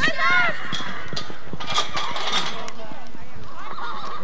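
A horse galloping a pole-bending run on arena dirt, its hoofbeats faint under a high, wavering call right at the start. Voices call out about two seconds in and again near the end.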